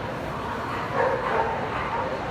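A dog barking a few times, loudest about a second in, over the steady chatter of a crowd.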